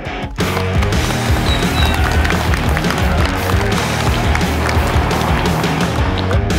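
Loud rock background music with heavy bass and a driving beat, kicking in fully about half a second in after a short rising build-up.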